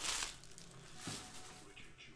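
Quiet room with a brief soft rustle at the start and a faint tap about a second in: trading cards and foil packs being handled.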